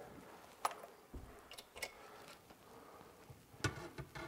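A few faint clicks and knocks of a metal drawer slide rail being set against a cabinet side panel and lined up with its holes, the clearest knock near the end.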